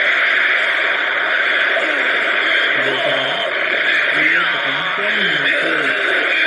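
Film soundtrack played back with a loud, steady hiss-like noise over it and faint voices underneath, sounding thin like a radio.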